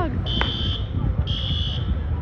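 An electronic alarm beeping: a steady high tone about half a second long, twice, about a second apart, over a steady low rumble.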